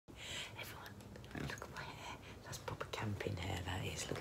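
Whispered speech that turns into a low speaking voice about three seconds in.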